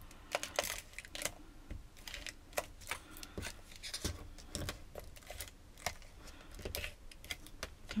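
Irregular light clicks and taps of a handheld tape-runner adhesive dispenser being pressed and pulled across small folded paper spacers on a cutting mat, with paper handling in between.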